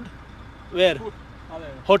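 A man speaking two short syllables over a steady low hum in a truck cab.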